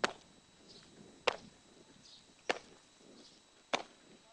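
Boots stamping on hard ground in a slow, even parade-drill march: four sharp impacts, about one and a quarter seconds apart.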